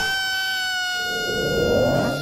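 A cartoon lizard's long, high-pitched wail, held on one pitch for about two seconds and dropping slightly near the end.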